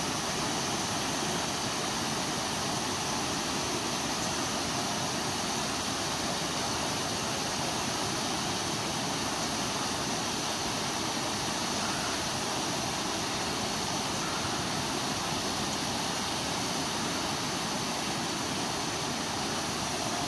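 Shallow stream running over rocks: a steady, even rushing of water.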